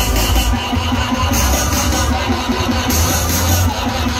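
Electronic dance music from a DJ set played loud over a PA, with a heavy bass and bright high sections cutting in and out about once a second.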